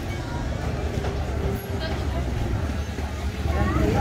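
Busy market-street ambience: a steady low rumble of traffic and motorbikes with faint voices of passers-by. Near the end, nearby speech grows louder.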